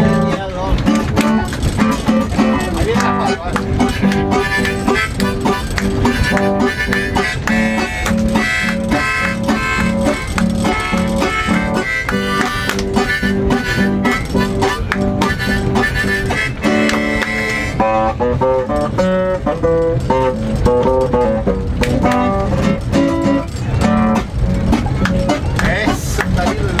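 Harmonica in a neck holder played over an acoustic guitar: an instrumental passage of a folk song, with held chords that change every second or so.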